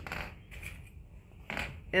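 Soft handling noises of fabric and paper being moved and smoothed on a tabletop: a light click at the start, then a brief rustle about one and a half seconds in.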